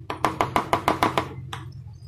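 A plastic spatula tapping quickly against the rim of a plastic mixing bowl, about ten rapid taps in a second and then one more, knocking spice paste off into gram flour.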